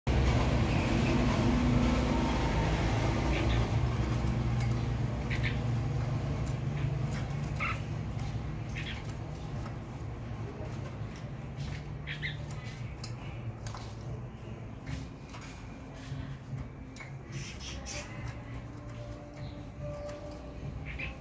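Caged red-whiskered bulbul giving scattered short chirps, with a few light clicks, over a low steady rumble that fades through the first half.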